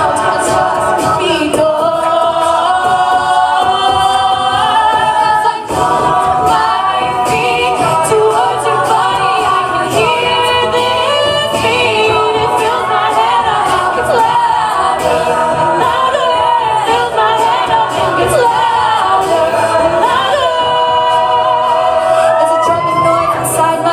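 Live mixed-voice a cappella group singing: a female lead over sustained backing harmonies, kept in time by vocal percussion.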